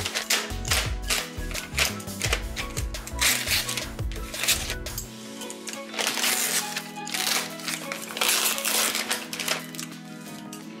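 Plastic mailing envelope being torn open and crinkled by hand, a run of crackling rips that grows denser about three and eight seconds in, over background music.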